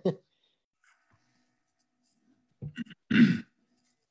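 Mostly silence, then about three seconds in a few short small sounds and a brief breathy vocal sound from a person, like a sigh or a cleared throat.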